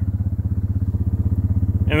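Small engine of a utility vehicle idling steadily, an even, rapid low throb with no change in speed.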